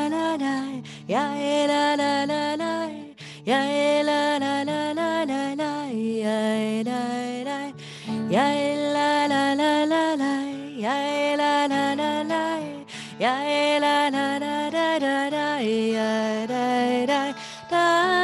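A woman singing a slow melody in long held phrases, each opening with an upward slide, accompanied by acoustic guitar.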